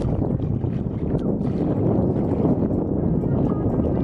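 Wind on the microphone over shallow seawater lapping and sloshing around a wading husky's legs, a steady rushing noise throughout.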